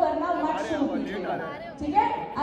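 Speech only: several people talking together in conversation.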